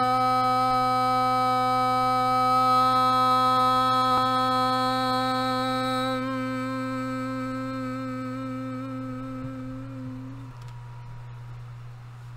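A woman's voice holding one long toning hum on a single steady pitch. It fades gradually and wavers slightly before stopping about ten seconds in.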